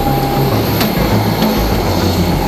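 Airliner's engines or auxiliary power unit running steadily on the apron, a continuous noise with a thin steady whine.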